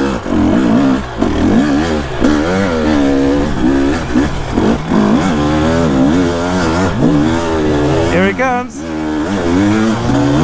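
Husqvarna 350 four-stroke dirt bike's single-cylinder engine revving up and down with the throttle while riding a rutted trail, its pitch rising and falling every second or so.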